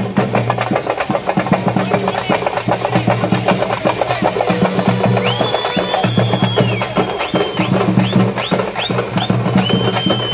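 Fast, dense drumming for street dancing, with a shrill whistle held for over a second about five seconds in and again near the end, and several short rising whistle blasts in between.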